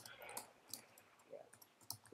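Near silence broken by five or six faint, short clicks spread irregularly through the two seconds.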